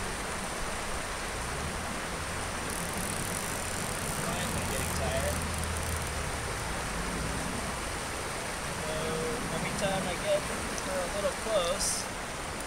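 Steady rush of flowing stream water, with faint voices about five seconds in and again near the end.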